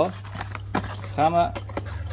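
Small cardboard box and its paper packing being handled and folded shut: a few light clicks and rustles, over a steady low hum.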